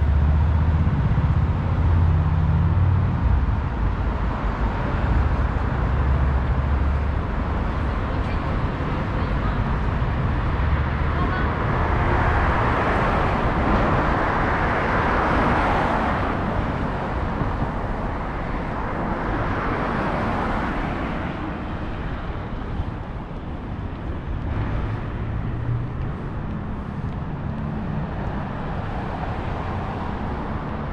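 City road traffic: car engines and tyres running on a wide road, with cars passing close by. The sound swells to its loudest about halfway through, with a second, smaller swell a few seconds later.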